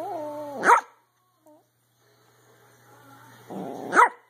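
Pomeranian 'talking': a short wavering, howl-like call in the first second that rises in pitch at its end, its attempt at 'mama'. Near the end comes a rougher, louder bark.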